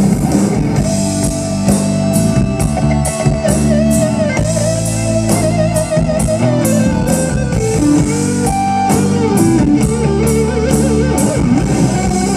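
Live rock band: a lead electric guitar solo of long held, bent notes with wide vibrato, over drum kit and bass guitar, the cymbals struck on a steady beat.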